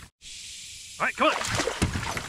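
A dog whining in short rising-and-falling cries, followed by knocks and splashing as it scrambles off a kayak into shallow water near the end.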